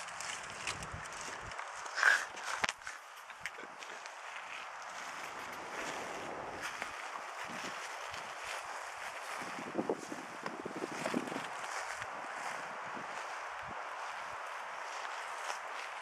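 Footsteps on dry pine needles and forest floor over a steady outdoor hiss, with a louder short knock about two seconds in and a few small knocks later.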